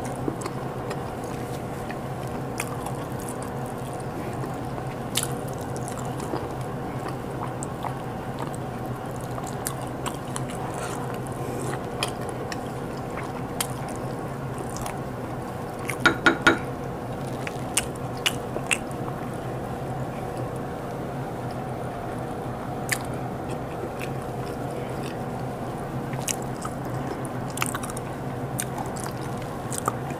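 Close-miked eating sounds: chewing and mouth smacks as chicken stew and boiled cocoyam are eaten by hand, heard as scattered small clicks over a steady low background hum. A quick run of louder clicks comes about halfway through.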